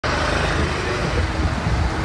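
Road traffic noise: a steady rumble and hiss from vehicles on a city street, which cuts off suddenly at the end.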